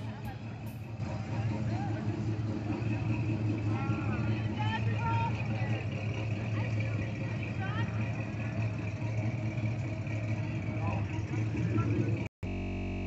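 The V8 engine of a classic Chevrolet Chevelle SS running with a steady low rumble as the car drives slowly past.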